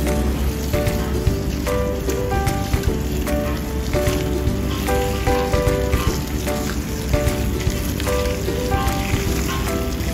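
A steady stream of hot water is poured onto dry glass noodles in a stainless steel mesh strainer and bowl, making a continuous splashing hiss. Light background music with short single notes plays underneath.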